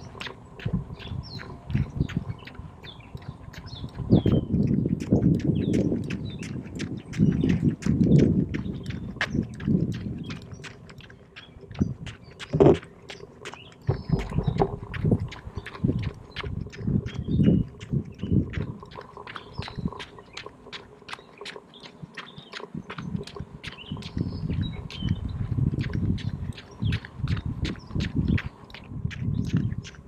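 Outdoor ambience with a low rumble that swells and fades several times, a steady light clicking about three times a second, and birds chirping.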